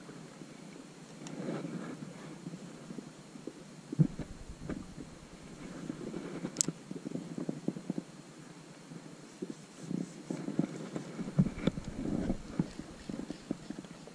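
Faint, irregular handling noise: small knocks, clicks and low rumbles as a fishing rod and reel are worked in the hands, with a louder knock about four seconds in and one sharp click about halfway through.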